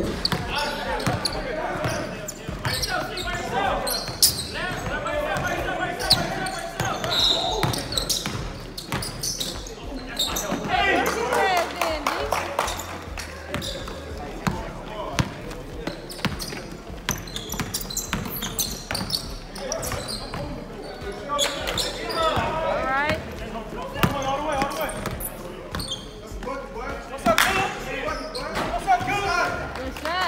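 Basketball being dribbled and bouncing on a hardwood gym floor in irregular thuds during a pickup game, with players' shouts and chatter ringing in the large hall.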